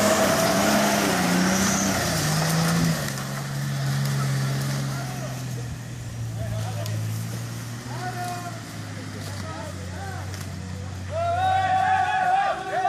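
Nissan Patrol GR Y60 off-roader's engine working hard as it drives past over loose ground, its pitch stepping down over the first three seconds, then running lower and quieter. People call out near the end.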